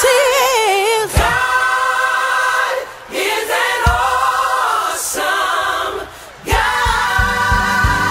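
Female gospel vocal group singing in close harmony, long held notes with vibrato, with almost no accompaniment. About six and a half seconds in, a low steady beat comes back in under the voices.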